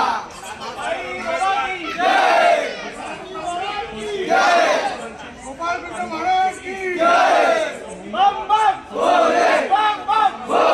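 A group of young men shouting together in loud, repeated calls, five or six shouts about two seconds apart, while a Govinda team holds a human pyramid.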